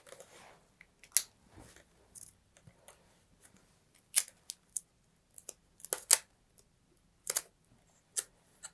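Hands pressing strapping tape down and turning a model rocket body tube on a cutting mat: faint, irregular sharp clicks and short rustles of tape and handling.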